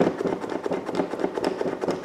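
A liquid chalk marker being primed: its tip is pumped again and again against a paper towel, giving a fast run of small clicks and taps as the valve tip presses down to get the ink flowing.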